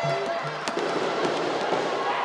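Music with a fast, steady low drumbeat over the background noise of a hall full of people, with a few sharp cracks.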